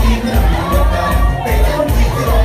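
Loud dance music with a steady, heavy bass beat, and a crowd shouting and cheering over it.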